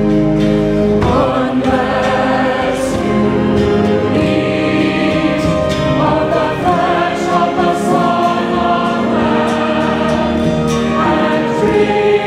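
A large mixed choir of men and women sings a hymn, with instrumental accompaniment, in sustained chords that change every few seconds.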